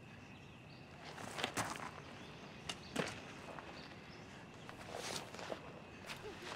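Footsteps and clothing rustling as a man stands up and moves, a scatter of short scuffs and knocks, over a faint, steady chirr of night insects.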